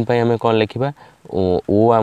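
Speech only: a man talking, in two phrases with a short pause about a second in.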